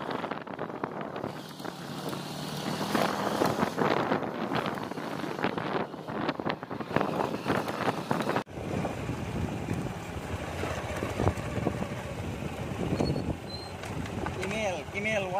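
Motorcycle riding a rough dirt track: wind buffeting the microphone over the running engine, with many short knocks and rattles from the bumpy ground. The sound changes abruptly about eight and a half seconds in and is steadier after that.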